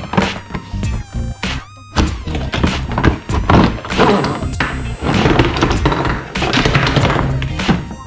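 Background electronic music, with several thunks and knocks of cardboard toy-gun boxes and a plastic toy rifle being handled and set down on a table.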